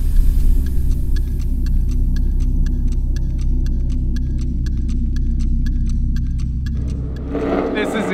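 Ford Raptor's 6.2-litre V8 running through a newly fitted Corsa Extreme cat-back exhaust, idling steadily with a deep low note just after start-up, easing off near the end. A light regular ticking sits over it, about five times a second.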